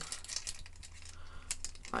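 Faint, scattered plastic clicks and light handling noise from a small plastic transforming toy car being turned in the hands while its push-button, spring-out part and flap are worked.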